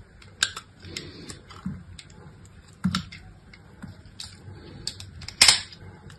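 Utility knife blade carving into a brittle bar of soap, with irregular crisp cracks and crunches as chips break away, the loudest about five and a half seconds in.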